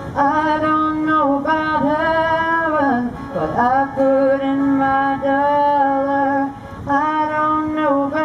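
A woman singing in long held phrases to her own acoustic guitar accompaniment, with two short breaks between phrases.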